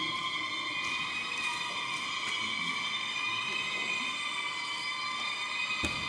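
Sustained high-pitched drone of several steady tones that waver slightly, like a haunted attraction's ambient sound effect, with a single thump near the end.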